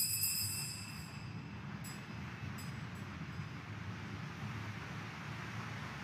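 Altar bells (a hand-shaken cluster of sanctus bells) ringing out and fading over about the first second, with a few faint last jingles a second or two later: the bells rung at the elevation of the chalice after the consecration. A steady low room hum follows.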